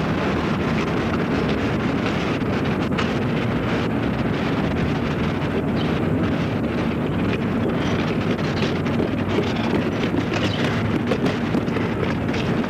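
Wind buffeting an outdoor microphone: a steady, loud rushing noise.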